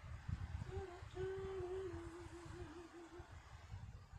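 A person humming a short wordless tune: a brief note, then a longer held note that wavers into quick wobbles before stopping, over a low rumble.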